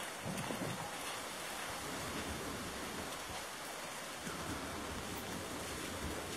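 Steady, even hiss of outdoor background noise, like light wind on the microphone, with no distinct events.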